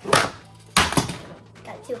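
Hot Wheels toy monster truck striking the plastic playset: two sharp plastic knocks, the second a little under a second after the first.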